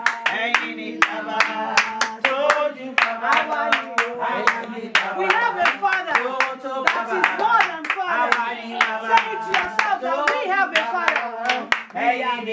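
Group of voices singing a church-style chorus over steady rhythmic hand clapping, about two to three claps a second.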